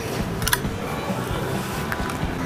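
Quiet background music over shop room tone, with a light click about half a second in and another near the end.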